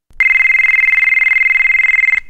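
Telephone ringing: one loud, high, fast-trilling ring that starts just after the beginning and holds steady for about two seconds.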